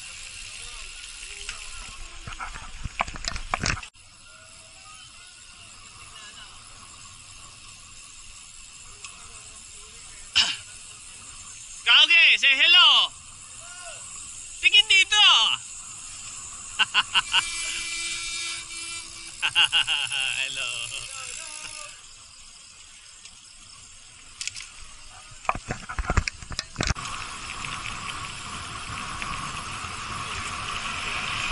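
Wind and road noise on a bicycle-mounted microphone during a road ride, broken by a few short, loud warbling voice-like calls and some sharp clicks.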